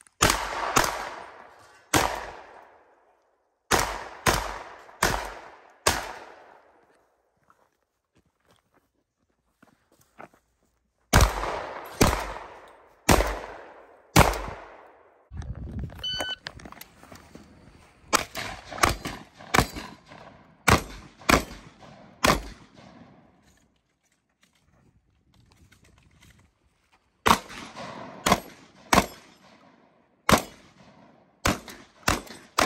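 Gunshots from a 3-gun competitor's firearms, fired in quick strings of two to six shots with short pauses between strings as the shooter moves between targets, each shot ringing out briefly after it.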